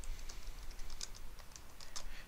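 Computer keyboard typing: an irregular run of quick keystrokes as a short phrase is typed.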